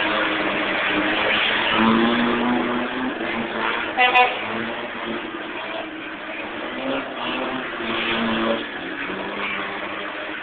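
Car engine revving up and down as the car is driven hard in spins and slides. A brief, loud beep about four seconds in.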